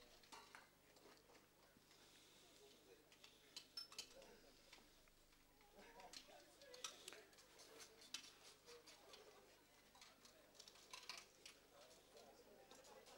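Faint, scattered metallic clinks and taps of spanners and hand tools working on tractor parts, in brief clusters.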